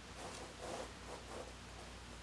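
Fingers rubbing and pressing paper stickers flat onto a planner page: a few soft, faint paper rustles in the first second and a half, then hands lifting away.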